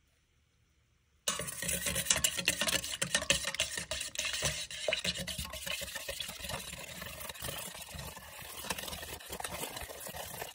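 Metal spoon stirring and scraping in a stainless steel pot of melted beeswax and mutton tallow with lamp black mixed in. It starts suddenly about a second in and is busiest for the next few seconds, then eases a little.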